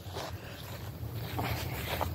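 Wind noise on a phone microphone, a steady low rumble, with footsteps on lawn grass.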